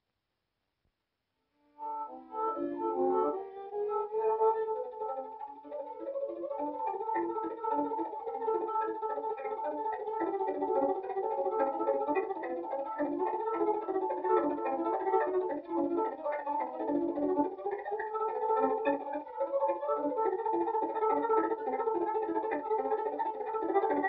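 Silence for the first couple of seconds, then a violin starts playing a melody that carries on steadily.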